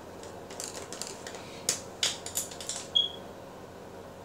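A run of light clicks and taps from small hard objects being handled, the sharpest about two and three seconds in, the last one leaving a brief high ring.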